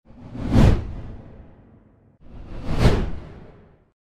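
Two whoosh transition sound effects, each swelling quickly and then fading away. The first peaks about half a second in, the second near three seconds.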